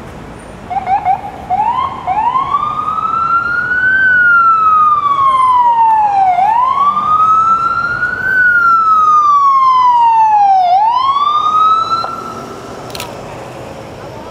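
Loud emergency vehicle siren: a few short yelps, then a slow wail rising and falling twice and rising once more before cutting off about twelve seconds in.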